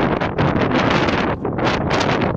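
Wind buffeting a phone's microphone: a loud, uneven rush of noise that dips briefly twice.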